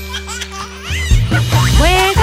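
A cartoon baby giggling over upbeat children's backing music.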